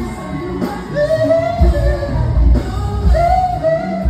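Live R&B performance: a singer's melodic lines over a band with heavy bass, loud and continuous.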